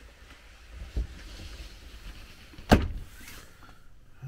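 Handling bumps inside a motorhome: a dull thump about a second in, then one sharp, loud knock with a short ring shortly before the end, over faint rustling.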